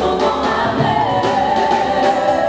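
Live gospel choir singing in unison on microphones, backed by a band with a drum kit.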